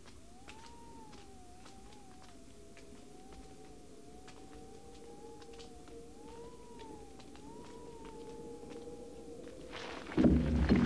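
Faint background film score: one wavering melodic line that slowly rises and falls over a steady held drone, with faint scattered clicks, swelling slightly toward the end.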